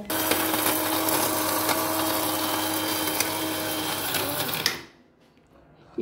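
Electric mixer-grinder running with its steel jar full of whole dry spices, grinding them into masala with a steady motor hum, then switched off suddenly about four and a half seconds in.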